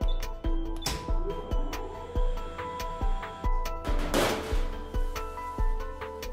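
Background music with a steady beat, about two beats a second, over held chords.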